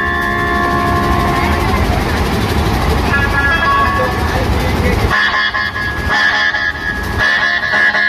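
Dhumal band music: large barrel drums beaten together in a dense, loud rhythm under a horn-like lead melody. About five seconds in the deep drumming drops away, leaving the high, horn-like melody with lighter, broken drum strokes.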